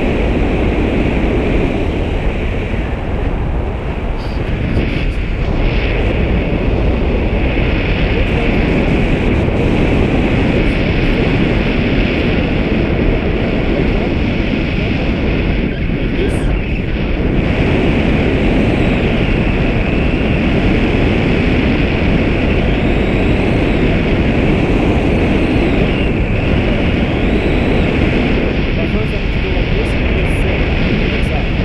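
Loud, steady wind rushing over an action camera's microphone in flight under a tandem paraglider.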